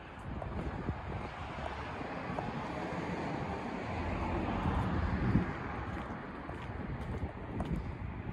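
Wind rushing over the microphone, with gusty low rumbling that builds toward a peak about five seconds in and then eases.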